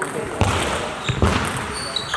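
Table tennis rally: the ball clicks off the bats and the table several times, with the two heaviest hits about half a second and just over a second in. Voices run underneath.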